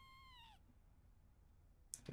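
Faint, high-pitched, drawn-out voice-like sound from the anime soundtrack. It holds one pitch, then drops away and stops about half a second in. Near silence follows.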